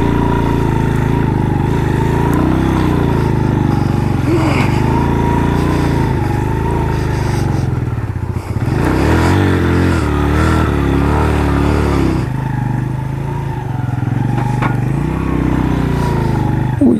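Motorcycle engine running while the bike is ridden slowly over a rough, rocky track, its pitch rising and falling as the throttle opens and closes.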